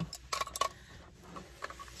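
Light clicks and taps from the metal and plastic arm of a desk-clamp phone holder as it is handled and its joint is twisted to loosen it: a few sharp ticks about half a second in and again near the end.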